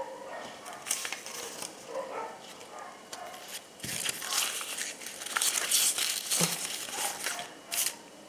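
Paper till receipts and notebook sheets rustling and crinkling as they are handled and shuffled by hand, in irregular bursts that get denser and louder in the second half.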